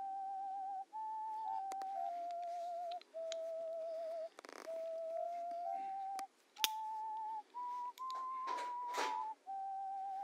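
A slow tune in a whistle-like tone, one wavering note held for about a second at a time, stepping up and down in pitch. A few sharp clicks and brief rustles sound over it about halfway through and near the end.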